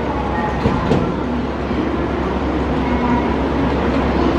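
JR 213 series electric train pulling away from the platform and receding, its motors and wheels running with a steady rumble. There are two short clicks just under a second in.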